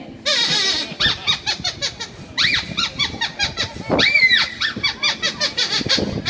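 Sweep glove puppet's squeaky voice: a run of short, high squeaks that rise and fall in pitch, with a longer arched squeak about four seconds in.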